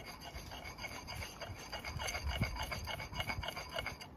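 Belgian blue whetstone honing the steel bit of a True Temper Kelly Works axe head in quick, short back-and-forth strokes, several a second, with a faint metallic ring.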